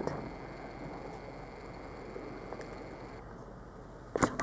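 Quiet, steady room tone and hiss with a couple of faint ticks.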